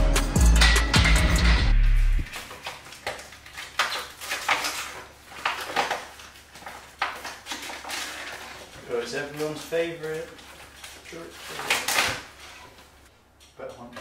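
Music with a heavy bass beat cuts off suddenly about two seconds in. Irregular knocks and taps of a kitchen knife on a wooden cutting board follow as food is sliced, with a brief voice sound about nine seconds in.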